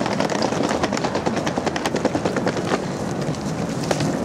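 Wheeled suitcases rolling over paving, a steady rumble broken by irregular clicks and rattles as the wheels cross bumps and joints.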